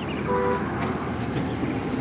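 Steady machine hum from a food trailer's running kitchen equipment, with a short beep about a quarter of a second in.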